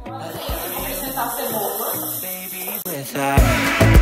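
Background music: a lighter, quieter passage, then a heavy steady beat comes back in about three seconds in.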